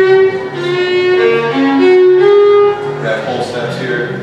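Solo fiddle bowing a short melodic phrase of single notes that step up and down in pitch, loudest in the first three seconds and softer after.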